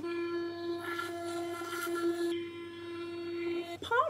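Spotlight Oral Care sonic electric toothbrush buzzing steadily while brushing teeth. The buzz turns duller a little past two seconds in, and the brush switches off just before the end.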